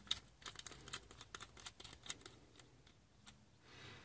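Small precision screwdriver backing out a tiny screw from the metal back bracket of a laptop optical drive: a run of faint, quick clicks and ticks that thin out near the end.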